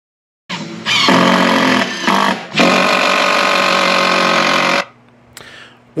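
Power drill motor running at a steady speed while driving screws to fasten an electrical panel to a plywood mounting board. It starts about half a second in, dips briefly a little past two seconds, runs on again and cuts off abruptly near the end.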